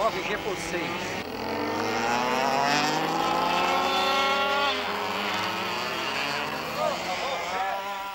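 Racing go-kart engine accelerating, its pitch climbing steadily for about three seconds, then easing off and running on at a lower, steadier pitch.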